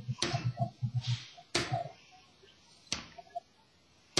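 Snare drum struck with wooden drumsticks in single free strokes, the stick let rebound off the head. Three separate hits come a little over a second apart, each with a short ring.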